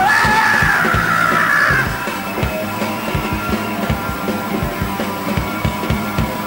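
Live punk rock band playing loud: a shouted vocal note held for about two seconds at the start, then electric guitars, bass and a steady drum beat carry on without singing.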